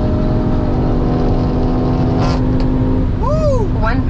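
Audi S3's turbocharged 2.0-litre four-cylinder engine and tyre noise inside the cabin at highway speed, holding a steady pitch. About three seconds in, a short rising-and-falling vocal sound comes over it.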